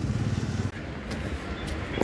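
Motorcycle engine idling, a low steady rumble that eases a little about two-thirds of a second in.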